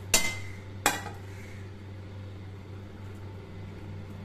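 A glass bowl set down on a hard counter: two sharp clinks less than a second apart, the first ringing briefly.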